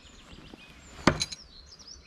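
A thrown steel knife striking a wooden log-round target: one sharp knock about a second in, followed by a couple of quieter knocks. Birds chirp faintly throughout.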